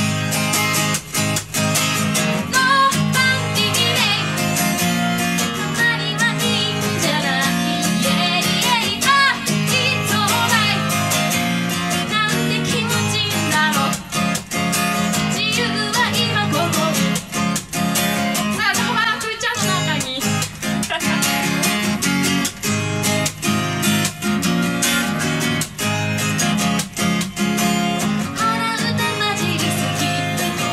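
A woman singing to her own strummed acoustic guitar, a solo voice-and-guitar song.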